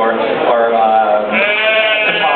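A sheep bleating, with one long call loudest near the end.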